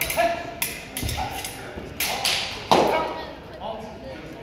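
Steel foil blades clashing in several sharp clicks over the first three seconds; the loudest comes near three seconds in, with a brief ring.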